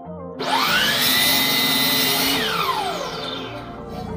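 DeWalt compound miter saw motor starting with a rising whine and running at full speed as the blade cuts through a wooden board. It then winds down with a falling whine.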